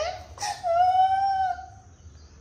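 A cat gives one long, drawn-out meow, fairly level in pitch, lasting a little over a second.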